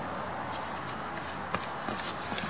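A person's footsteps approaching over outdoor ground: a few light, irregular steps over a steady background hum.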